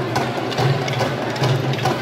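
Wooden sticks clacking together in a stick dance over hand drums keeping a steady, even beat.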